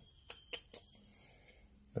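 A few faint light clicks as metal engine bearing shells are handled in the hand, over a faint low hum.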